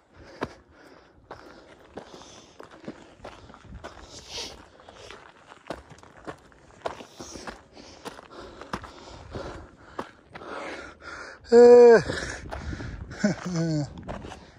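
Footsteps of a hiker walking on a rocky dirt trail, a steady run of short scuffs and crunches. About eleven and a half seconds in a person gives a loud, short vocal sound, and another brief voice sound follows near the end.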